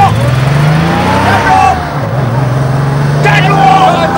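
Small dump truck's engine revving hard as it pulls away. The pitch climbs, drops back about halfway through, then climbs again.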